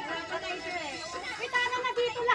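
Several people's voices chattering over one another, with no clear words.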